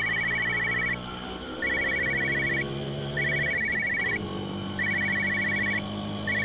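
Mobile phone ringing: an electronic trilling ring in repeated bursts of about a second with short pauses between, over sustained synthesised tones.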